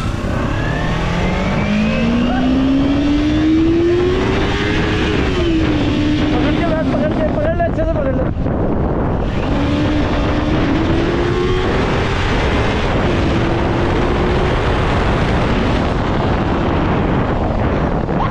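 Kawasaki Ninja 300 parallel-twin engine accelerating hard. Its note climbs for about five seconds, drops at a gear change, then climbs again and holds, with heavy wind rush on the microphone throughout.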